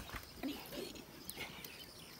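Faint clucking from chickens in a quiet yard, a few short calls, with a single light click at the start.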